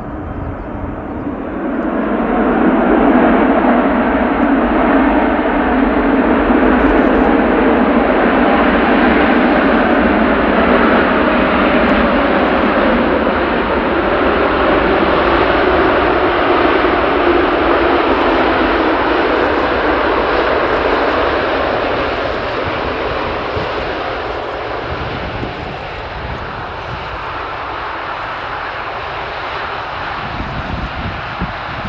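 The four turbofan engines of an AirBridgeCargo Boeing 747-8F running at high power on the runway, a loud steady jet roar. It swells about two seconds in, holds, and eases off over the last third.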